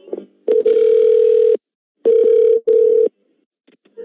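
Telephone line tones heard through the call audio: one steady mid-pitched tone lasting about a second, then after a short gap two shorter tones. They come between the agent dropping the call and the number being redialled.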